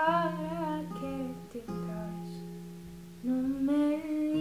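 Acoustic guitar chords ringing under a woman's wordless singing, one vocal phrase at the start and another near the end, with the guitar ringing alone in between.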